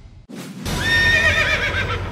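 A horse whinny sound effect: one loud, quavering neigh that wavers and falls in pitch, starting just before a second in, after a brief rush of noise.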